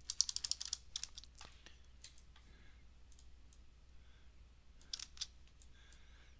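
Computer keyboard keystrokes, faint: a quick run of about ten key presses in the first second, the sound of text being deleted key by key, then a few scattered single presses.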